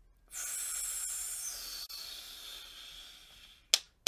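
A long breathy exhale of about three seconds, a steady hiss that drops in pitch partway through, then a sharp clap near the end.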